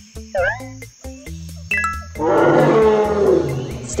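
A dinosaur roar sound effect: one long, loud roar in the second half, falling slightly in pitch, over light children's background music. A short chirp sounds about half a second in.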